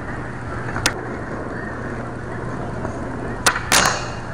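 Skateboard wheels rolling on concrete, with a single click about a second in. Near the end come several sharp clacks as the board is popped and lands on a metal flat bar to grind.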